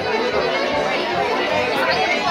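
Many diners talking at once in a crowded dining room, a steady chatter of overlapping voices, with live violin music playing behind it.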